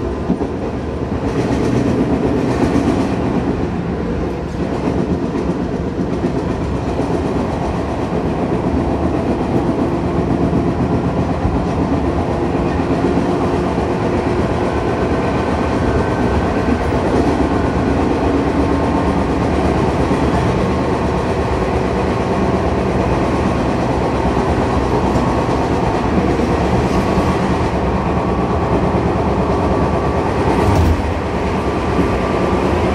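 Tobu 10000 series electric train running at a steady speed, heard on board: a continuous rumble of wheels on rails with a faint steady motor hum.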